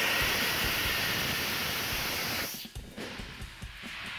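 Rocket motor firing in a static test stand: a loud steady rushing hiss of the burn that cuts off sharply about two and a half seconds in, leaving a fainter hiss trailing away.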